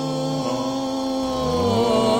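A doo-wop vocal group holds the song's final chord: the female lead sustains one long note over the men's harmony voices, and vibrato comes into it near the end.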